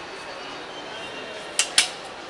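Two sharp clicks, close together near the end, over steady background noise.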